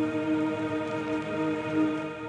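A drone sample playing back pitched up and time-stretched: a steady, sustained chord of held tones that swells gently in loudness.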